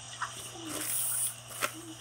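Clear plastic zip-lock bag crinkling and rustling as the squishy inside it is handled, with a couple of sharp crackles.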